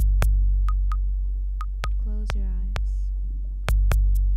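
Improvised modular-synthesizer music: a loud, deep bass drone with sharp clicks coming in pairs a quarter second apart, some carrying a short beep, and the drone swelling again near the end. About two seconds in, a brief vocal sound slides down in pitch into the microphone.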